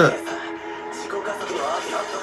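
Anime soundtrack playing: background music with steady held tones, and a character's voice speaking over it in the second half.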